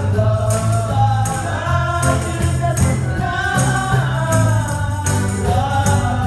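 Gospel praise song sung by women's voices over a backing with a strong, steady bass, with a handheld tambourine with a drumhead struck and shaken on the beat, about two jingling hits a second.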